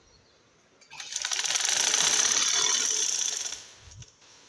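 Sewing machine running a fast burst of stitches through gathered fabric for about two and a half seconds. It starts about a second in and winds down just before the end.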